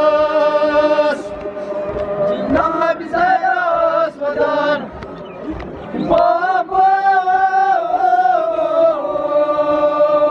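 Male nauha reciters chanting a mourning elegy into microphones in long held notes that waver slightly. The voice drops away briefly about halfway through, then resumes.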